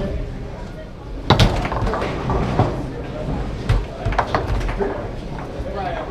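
Foosball in play: sharp plastic clacks of the ball being struck by the table's figures and the rods knocking, about half a dozen hits, the loudest a little over a second in.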